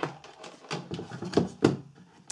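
A few short knocks and clatters of handling on a wooden tabletop as a digital multimeter and its test leads are moved into place.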